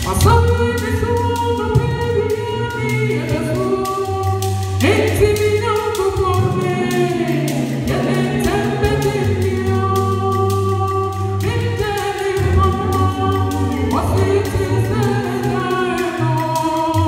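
A small a cappella gospel group singing in close harmony through microphones, with held chords over a steady low bass voice. A beaded gourd shaker keeps a light, regular beat.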